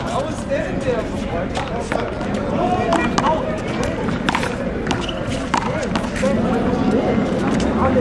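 One-wall handball rally: a rubber handball struck by gloved hands and smacking off the wall and concrete in sharp, irregular knocks, the loudest a little past four seconds in, with sneakers scuffing on the court. People talk steadily in the background.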